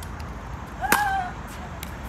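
A pickleball paddle strikes the plastic ball once, a sharp pock about a second in, with a few fainter ball clicks around it.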